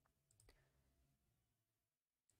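Near silence, with two very faint clicks about half a second apart near the start.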